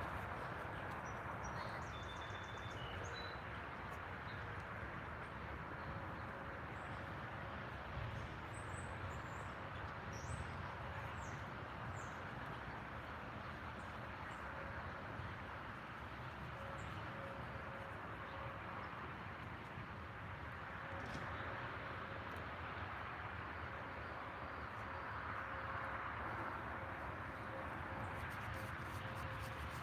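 Outdoor morning ambience: a steady hiss of background noise with a few faint, scattered bird chirps.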